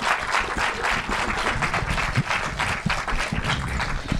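Audience applauding: many people clapping at a steady level.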